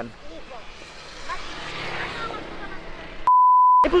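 A steady 1 kHz bleep tone, about half a second long, comes in near the end and replaces all other sound: a censor bleep edited over a word. Before it there is faint outdoor traffic noise.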